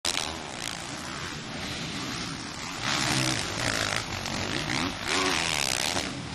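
Several 450-class four-stroke motocross bikes racing, their engines revving up and down in wavering pitch. The engines get louder about halfway through.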